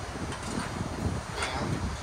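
Wind buffeting the microphone outdoors: an uneven low rumble.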